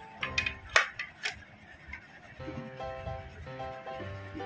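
A quick run of sharp plastic clicks and knocks in the first second or so, the loudest about three-quarters of a second in, as the stick-lids of a plastic popsicle mould are handled in its tray. Background music plays throughout.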